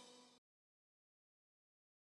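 Near silence: the last faint tail of a song's fade-out dies away within the first half second, then dead digital silence.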